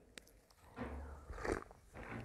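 A man drinking from a glass: a small tap just after the start, then two quiet sips about a second in and half a second later.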